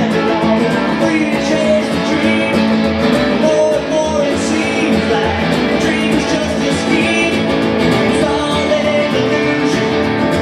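Live rock and roll band playing: strummed acoustic guitar, electric guitar and slapped upright double bass, with a man singing.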